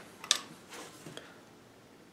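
Handling noise as a wooden guitar neck is picked up: a sharp click about a third of a second in, then a few faint taps and rustles.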